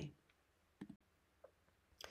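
Near silence: room tone, with two faint short clicks, one a little under a second in and one about half a second later.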